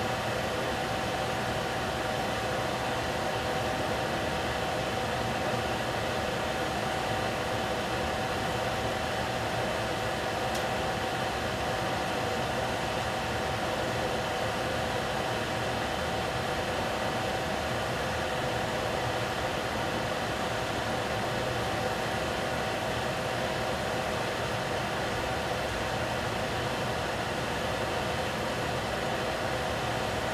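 Steady hiss with a constant mid-pitched hum from a stove running under a covered pot of steaming baby squash.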